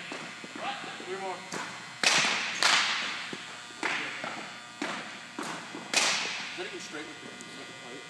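About six sharp smacks of a baseball striking, each ringing out in a long echo through a hardwood-floored gymnasium, three of them in quick succession about half a second apart.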